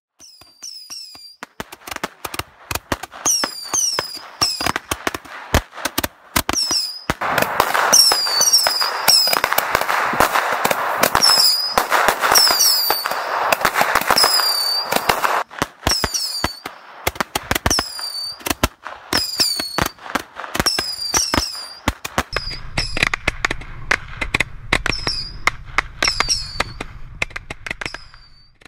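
Fireworks going off: rapid sharp cracks and bangs, thickening into dense crackling in the middle, with short falling high-pitched whistles repeating throughout. A low rumble joins near the end.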